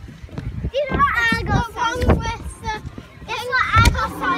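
A young child's high-pitched voice making short sounds that the recogniser did not take as words, from about a second in, loudest near the end.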